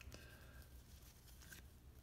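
Near silence: room tone, with a couple of faint soft ticks from trading cards being handled.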